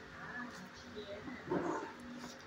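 Dogs barking faintly in shelter kennels, with one louder short burst about one and a half seconds in.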